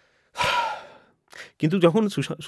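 A man's loud breath into a close microphone, a sigh of about half a second that fades out, then a short breath before talking resumes near the end.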